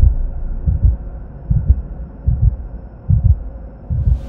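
Logo-intro sound effect: deep double thumps like a heartbeat, a pair about every 0.8 seconds, over a faint steady hum.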